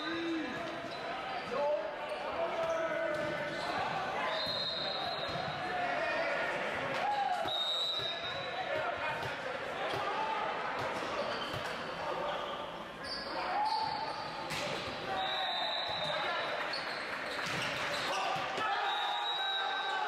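Indoor volleyball play in a reverberant sports hall: the ball is struck and bounces repeatedly, and sneakers give short high squeaks on the court floor several times. Players and spectators call out throughout.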